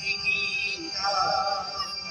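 Devotional song about the Bhagavad Gita: a singing voice with musical accompaniment, holding a note with a wavering pitch from about a second in.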